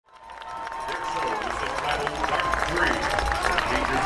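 Announcer speaking over a stadium public-address system, fading in from silence at the start.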